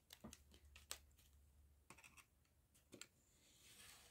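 Near silence with a few faint, irregular clicks and ticks as a snap-off craft knife is drawn along a steel ruler, cutting a strip from a layered paper collage board on a cutting mat.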